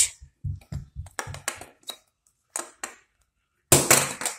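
Handling noise: a quick, irregular run of light clicks and knocks, then two single taps and a sharper knock near the end.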